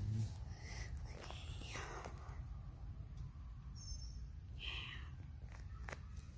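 Quiet background with a steady low rumble and a few faint, soft voice-like sounds, like whispering.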